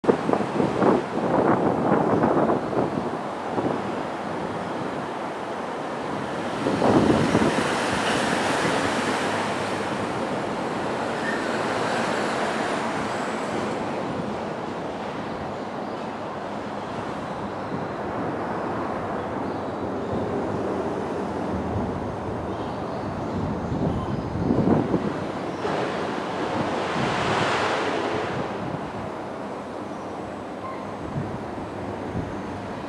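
Wind buffeting the microphone, with stronger gusts about a second in, around seven seconds and twice near the end, over a steady outdoor hiss.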